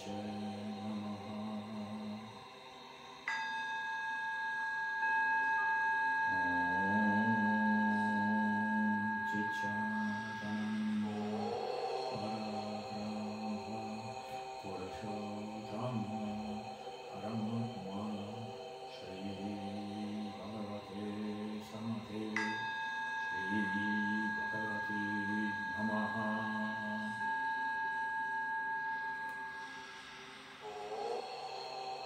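Meditation music: a low droning chanted mantra, with a singing bowl struck twice, about three seconds in and again about twenty-two seconds in, each strike ringing on for several seconds.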